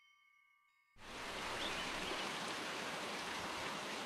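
Rushing water of a waterfall: a steady hiss of falling water that comes in suddenly about a second in. Before it, the faint tail of soft chiming music dies away.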